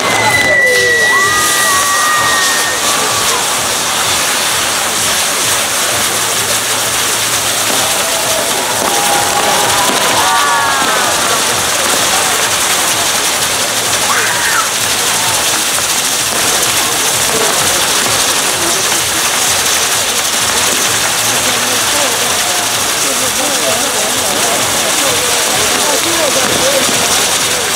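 Ground fireworks burning on a wheel set piece, giving a loud, steady, continuous hiss. Crowd voices run underneath, with a high whistle gliding down in the first few seconds.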